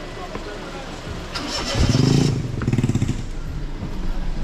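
An engine revving up briefly about two seconds in with a hiss, then settling and fading over the next second or so.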